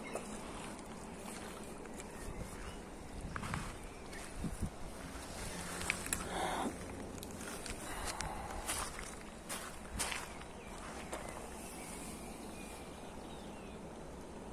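Shallow, stony river running steadily, with scattered clicks, knocks and splashes in the middle seconds as a hooked fish is brought into the shallows at the gravel edge.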